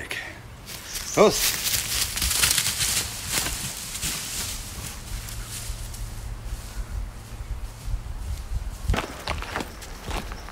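Footsteps of a man and his dog walking through dry fallen leaves on a forest floor, rustling and crackling, loudest early on and fading as they move away. A short voiced call sounds about a second in.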